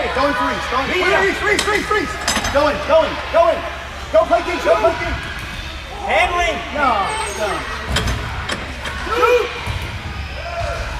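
Several voices of players and spectators calling out over one another in a large indoor soccer hall. A few sharp thuds of the ball come through, two of them close together near the end.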